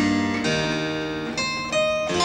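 Slow solo keyboard music: single notes and chords struck a few at a time and left to ring out.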